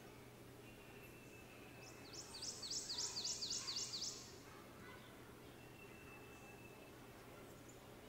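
A songbird singing one quick series of about ten high, evenly repeated notes, lasting about two seconds, starting about two seconds in. Other birds call faintly in the background.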